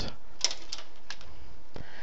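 A handful of light, irregular clicks and taps from a marker being handled against the paper chart, over a steady background hiss.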